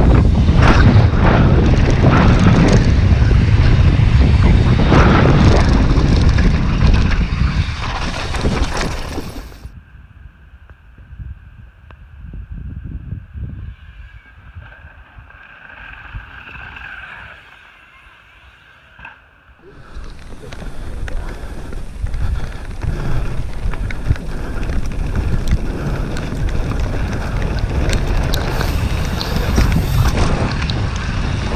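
Wind buffeting a helmet-mounted action camera, with tyres rumbling over a dirt trail and the downhill mountain bike rattling at speed. For about ten seconds in the middle the sound drops to a much quieter outdoor stretch as a bike rolls by, then the loud wind and trail noise returns.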